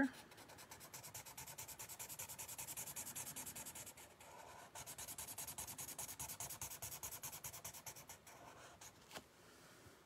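Sharpie marker scratching across sketchbook paper in quick back-and-forth strokes as a section is filled in solid black. There is a brief pause about four seconds in, and the strokes die away near the end.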